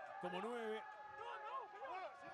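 Voices from the sound track of a televised rugby match clip, several overlapping at once.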